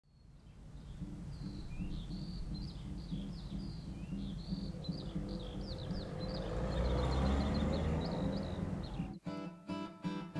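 Birds chirping over a low outdoor rumble that fades in, swells in the middle and ebbs. About nine seconds in, it cuts to a steel-string acoustic guitar being plucked.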